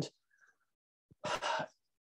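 A man takes a short, audible breath about a second and a half in, a breath between spoken phrases.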